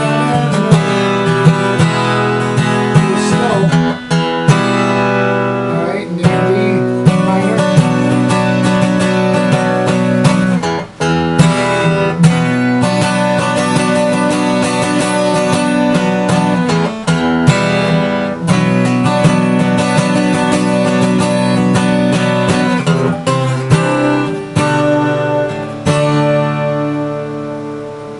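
Twelve-string acoustic guitar strummed hard in full chords, with the strokes ringing together. Near the end the playing eases off and the last chord dies away.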